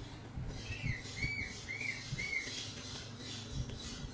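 A baby macaque giving four short high squeaks in quick succession, each rising and then falling in pitch, beginning about a second in. Soft low knocks sound underneath.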